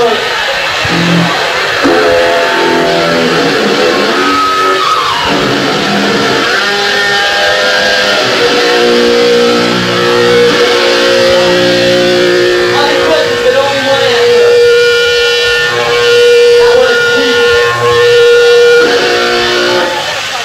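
A hardcore punk band playing live, with distorted electric guitar chords out front and one note held for several seconds in the middle. The recording is a worn, low-quality cassette tape dub.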